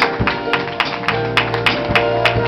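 Live church band starting a song: held chords over a steady bass, with sharp percussive hits keeping a beat about three times a second.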